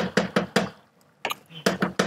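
Wooden spatula knocking against the inside of a pot of beans as it is stirred briskly, a quick run of sharp knocks about four or five a second, with a short break just before the midpoint.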